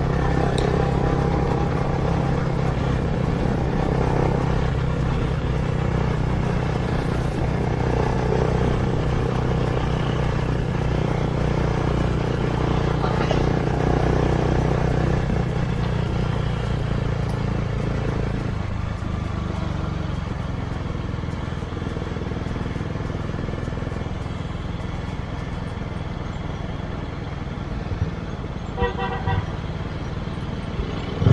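Sport motorcycle engine running steadily under way, with wind and road noise; the engine note drops and eases off a little past halfway. A few short horn toots sound near the end.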